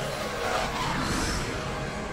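Cartoon sci-fi soundtrack: a steady rushing space effect of a spaceship beside a black hole, with background music underneath.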